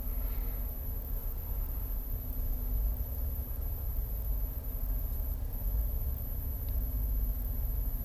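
Low, uneven rumble of outdoor background noise with a faint, steady high-pitched tone above it.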